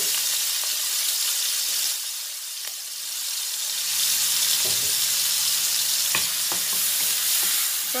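Onions sizzling as they fry in hot oil in a pan, a steady loud hiss that eases slightly for a moment in the middle. A few knocks of a utensil against the pan come as they are stirred.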